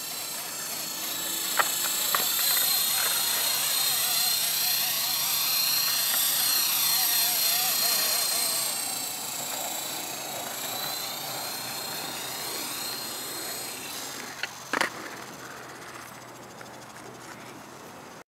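Electric Blade SR RC helicopter in flight: a steady high-pitched motor and rotor whine that grows louder over the first few seconds, then fades as the helicopter comes down. The whine ends about three-quarters of the way through, and two sharp clicks follow.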